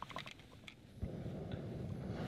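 Small metal clicks and taps as a backpacking stove is handled and its pot supports set up on a gas canister. About a second in, a steady low rushing noise starts and carries on.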